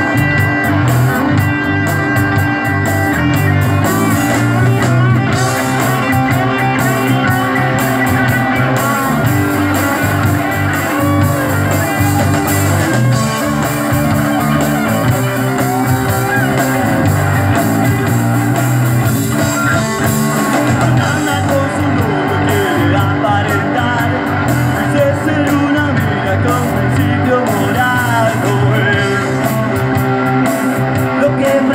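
Live rock band playing: two electric guitars, bass guitar and a drum kit, loud and continuous.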